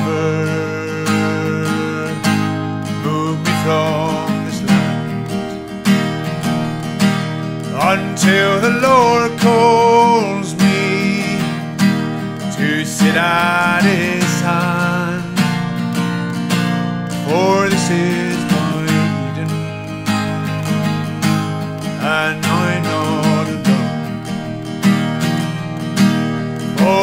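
Acoustic guitar strummed through an instrumental break between verses of a folk song, with a wavering, gliding melody line rising above the chords at several points.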